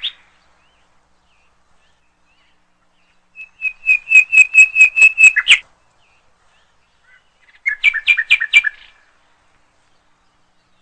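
A small songbird calling: a quick run of about ten sharp, high chirps over two seconds, then a second, shorter run of chirps a couple of seconds later.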